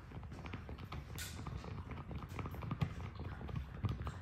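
Boston terrier chewing a corn-on-the-cob chew toy: irregular small clicks and creaks of teeth gnawing on the toy.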